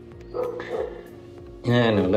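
A voice speaking, with a soft pause in the middle and louder speech again near the end, over quiet background music with a steady held note.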